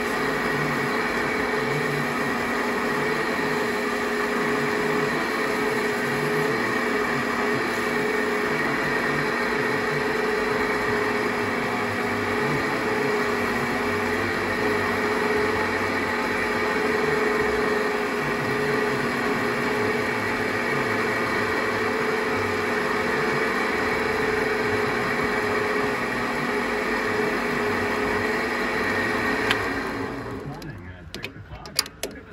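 Metal lathe running at a steady speed with a constant hum, while abrasive paper is held against a carbon fiber tube spinning in its three-jaw chuck. The lathe is switched off right at the end and the sound falls away.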